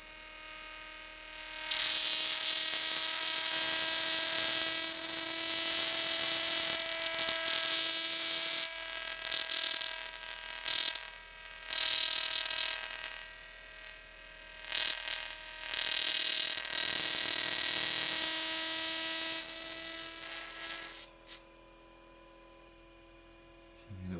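Sparks arcing from a Slayer exciter Tesla coil's top load, a loud hiss that cuts out briefly several times and stops about three seconds before the end. Under it runs a steady buzzing tone from the Bedini SSG-driven coil.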